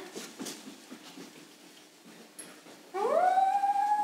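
About three seconds of near-quiet stage, then a single long howl like a dog's: it rises in pitch and then holds one note.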